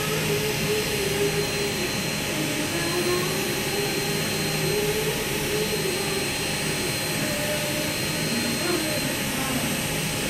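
Electric micromotor handpiece driving an FUE extraction punch, running steadily with a whirring hiss and a thin, steady high whine.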